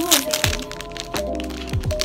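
Background music with a beat: held melody notes over kick-drum thumps and crisp percussion.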